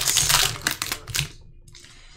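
Foil wrapper of a Panini Prizm Draft Picks basketball card pack being torn open and crinkled in the hands, a rapid crackle that dies away after about a second.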